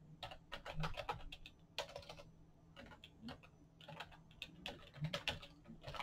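Computer keyboard typing, faint clicks of keystrokes in irregular short runs with brief pauses between them.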